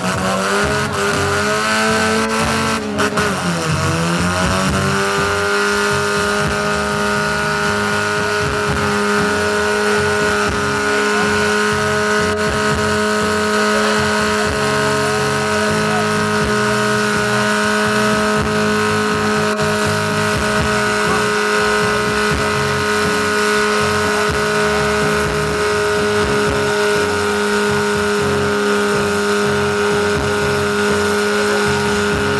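Car doing a burnout: the engine is held at high revs while the tyres spin and squeal on a steel plate. The revs waver and dip in the first few seconds, then hold at one steady high pitch.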